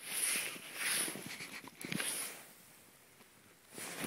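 Bernese Mountain Dog sniffing and rooting with its muzzle pushed into deep snow, in three short bursts about a second apart, then a pause of about a second before another burst near the end.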